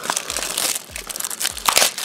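Clear plastic shrink wrap crinkling and crackling as it is pulled off a Blu-ray case.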